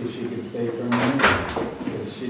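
Indistinct talking, with a brief loud noisy sound about a second in.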